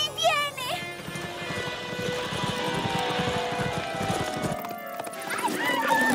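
Cartoon soundtrack: background music over the clip-clop of pony hooves galloping, with short high, wavering voice-like cries near the start and again near the end.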